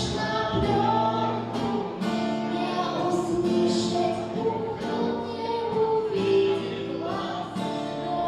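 A woman singing a song with acoustic guitar accompaniment, her voice carrying long held notes.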